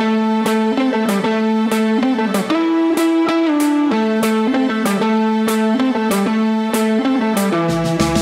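Instrumental music: an electric guitar picking a repeating melodic riff, one note after another at a steady pace.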